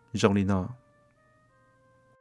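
A man speaking briefly in Hmong, then faint background music of soft held notes that step from one pitch to another.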